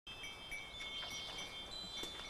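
Faint, sparse high-pitched chirping and ringing tones over a quiet outdoor background.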